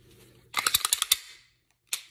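Sig Sauer P320 X-Five DH3 pistol's slide and takedown lever being worked by hand: a quick run of about eight sharp metallic clicks and rattles lasting under a second, then one more sharp click near the end.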